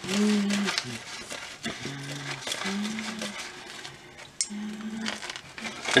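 Dry Sorachi Ace hops crackling and crinkling as they are crumbled by hand into a pot of wort, with a few short, low hums from a voice in between.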